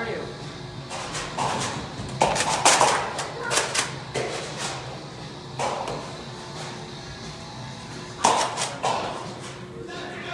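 Background music and indistinct shouting from players in a large indoor arena, with a few sharp clicks and knocks, the loudest a little under three seconds in and again after eight seconds.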